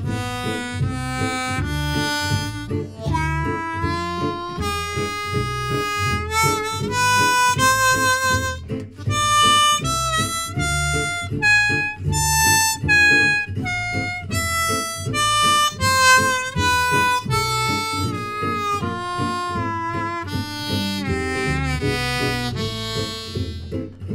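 Diatonic harmonica in G (Hohner Marine Band), played in third position, running the A harmonic minor scale one note at a time over two octaves. It climbs step by step to the top about halfway through and then steps back down.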